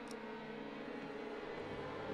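A low, sustained drone of several held tones from the TV episode's soundtrack, growing slightly louder near the end.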